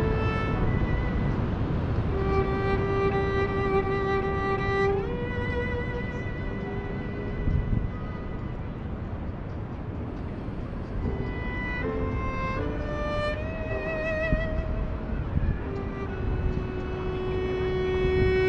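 Solo cello bowed in a slow melody of long held notes, thinning to a quieter passage in the middle, with vibrato on the held notes in the second half.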